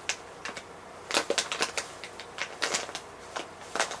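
Eyeshadow brush being worked over the eyelid: a string of about a dozen irregular light scratchy ticks.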